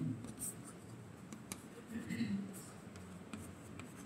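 Chalk writing on a chalkboard: faint taps and scratches as the strokes are made, in a small room. A brief faint murmur of a voice about halfway through.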